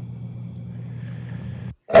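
A steady low hum with faint hiss, dropping out to silence for a moment near the end.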